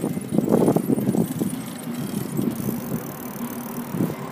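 Bicycle being ridden along a paved street: rumbling rattle of tyres and frame with wind noise, loudest in the first second and then quieter.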